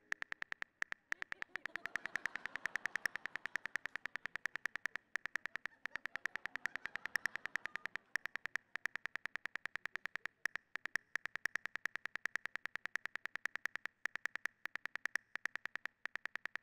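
Smartphone keyboard key clicks as a text message is typed: a rapid, even stream of short sharp ticks, several a second, broken by a few brief pauses.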